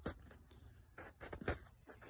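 Quiet background with a few faint clicks and taps, loudest about a second and a half in.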